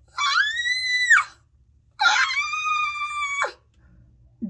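A woman's voice letting out two long, high-pitched squeals of delight, the first rising slightly in pitch, the second a little longer and held steady.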